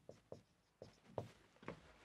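Marker pen writing on a whiteboard: a handful of faint, short strokes.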